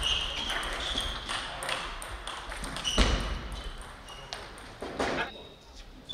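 Table tennis rally: the ball clicks sharply off bats and table in quick succession, with the loudest hit about three seconds in, and more ball clicks from other tables in the hall.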